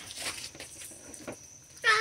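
Quiet pause filled by a steady high insect trill, typical of crickets, with a few faint soft sounds; a child's voice begins near the end.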